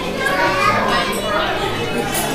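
Overlapping voices of children and adults chattering in a busy dining room, with no clear words.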